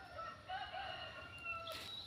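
A rooster crowing faintly: one long, wavering call of about a second and a half.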